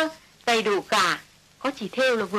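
A woman's voice speaking in three short phrases of dialogue, the voice high in pitch.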